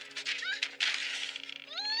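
Animated-film soundtrack: short rising cries and a scatter of clattering knocks as a character is knocked off her feet, over orchestral music.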